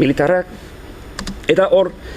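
A man speaking in short phrases, with a pause in the middle where a couple of sharp clicks from laptop keys sound.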